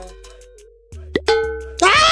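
Dubbed cartoon-style comedy sound effects: a fading held tone, then a sharp plop about a second in and a few short beeping tones, followed near the end by a sudden loud, high, sustained scream.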